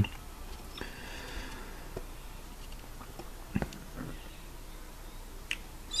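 Quiet handling noise: a few scattered light clicks and taps, the loudest about three and a half seconds in.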